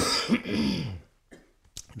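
A man coughing and clearing his throat behind his hand: a sharp burst at the start that runs into about a second of rough throat sound.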